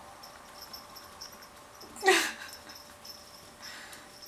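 A cat gives a single short meow about halfway through, falling in pitch, over a quiet room background.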